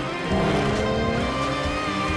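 Background music with car engines running and revving over it, their pitch sliding.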